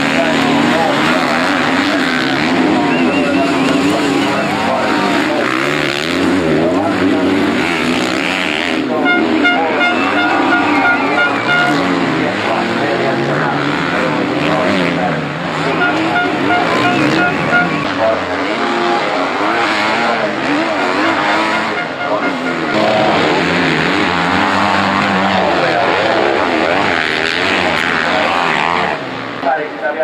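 Enduro motorcycle engines running and revving on a dirt track, several at once, their pitch rising and falling continually as the riders accelerate and back off.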